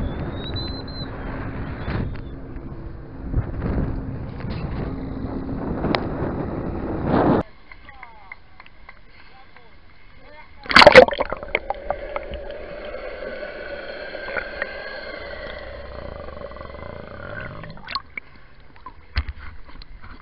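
A steady low hum with wind noise on a boat deck, which stops abruptly about seven seconds in. Then sea water sloshes and splashes around a camera held at the surface, with a loud splash about eleven seconds in.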